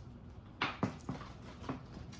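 A dog whimpering in a few short, high cries with falling pitch, spread over about a second.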